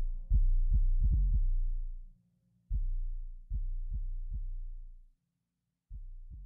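Vocal-less beat of a rap track: long, deep 808 bass notes, each started with a kick-drum hit, with no hi-hats or melody above them. The bass twice dies away into a brief silence before the next hits come in, each time a little quieter.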